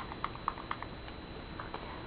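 Light, irregular clicks and taps from handling a blush compact and makeup brush, as the brush is loaded with blush.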